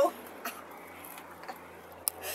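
Low, steady background rumble and hiss of distant motorway traffic, with two faint clicks, about half a second and a second and a half in, from the handled selfie-stick pole.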